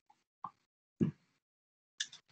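Three brief knocks heard over a video call, the loudest about a second in, with dead silence between them where the call's noise suppression cuts the line.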